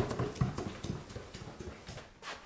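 Footsteps of a person in socks climbing wooden stairs: a quick run of dull thuds on the treads that grows fainter as the steps go on.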